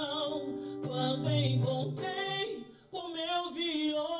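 A man singing a slow, held vocal line with musical backing, as in a studio recording take. The singing breaks off briefly near three seconds in, then resumes.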